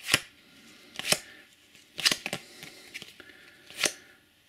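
Topps Match Attax trading cards slid one at a time off a handheld stack: short papery swishes, four of them about a second apart.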